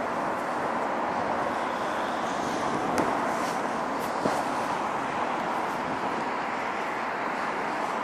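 Steady road traffic noise from a busy city road, with two short clicks about three and four seconds in.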